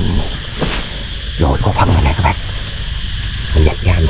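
A man's voice in a few short phrases, about a second and a half in and again near the end, over a steady low rumble of wind on the microphone.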